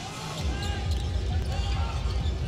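A basketball being dribbled on a hardwood court: repeated low bounces setting in about half a second in, over steady arena crowd noise.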